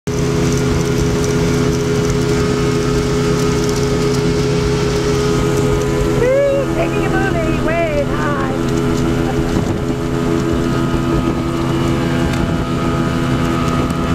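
Speedboat engine running steadily at cruising speed, with wind and water rushing past the moving boat.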